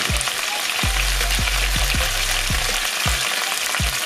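Chicken thighs shallow-frying in hot oil in a sauté pan, a steady sizzle. Underneath it runs a regular low thumping beat, about three a second, with a held bass note in the middle.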